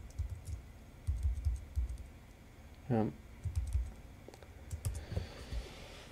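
Quiet clicks and soft thuds of hands working a computer at a desk, in several short clusters; a man says "yeah" about halfway through.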